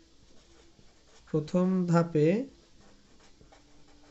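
Pen writing on paper: faint scratching strokes, with a brief spoken phrase in the middle.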